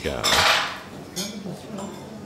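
Café dining-room clatter: crockery and cutlery clattering loudly for under a second, then a few light clinks over faint background chatter.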